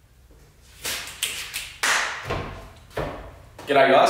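Several light, separate taps and knocks spread over about three seconds, with a man starting to speak near the end.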